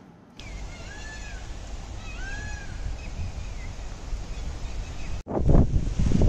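Two short animal calls, each rising then falling in pitch, about a second and a half apart, with a fainter one after, over a steady low rumble. About five seconds in the sound breaks off suddenly and a louder jumble of noise takes over.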